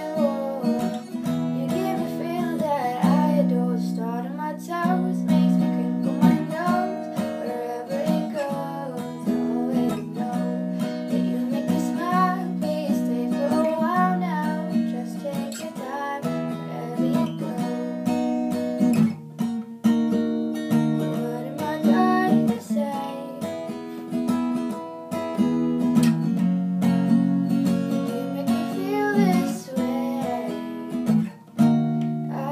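Steel-string acoustic guitar strummed in a steady, continuous chord pattern.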